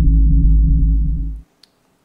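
Low, droning ambient soundtrack of a short animation: a deep, steady drone that cuts off suddenly about a second and a half in, followed by a single faint click.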